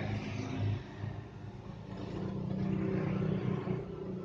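An engine humming steadily, growing louder in the second half and easing off near the end.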